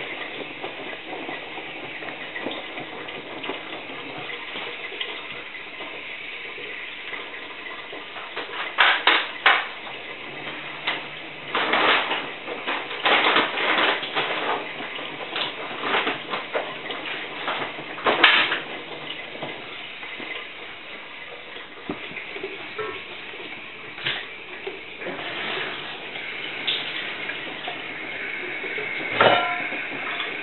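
Miele WT2670 washer-dryer drum tumbling a wet load of towels in the wash, with water sloshing. A run of louder irregular splashes and knocks comes in the middle.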